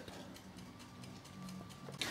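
Faint mechanical ticking over a low hum from a running Sangamo S200.33 electromechanical kWh meter.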